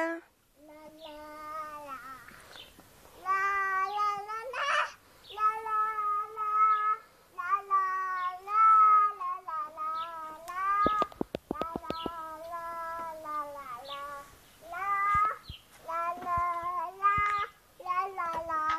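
A young girl singing unaccompanied in a child's voice, in sung phrases a second or two long with short pauses between them. A quick run of small clicks comes about two-thirds of the way through.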